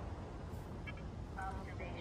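Steady low outdoor background rumble, with a few faint, brief voice sounds in the second half.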